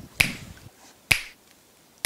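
Two sharp snaps about a second apart, each with a short ringing tail.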